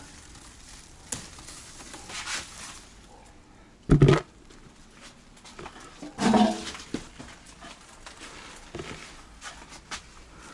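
A dog barking twice: one sharp bark about four seconds in and a longer, pitched one about two seconds later.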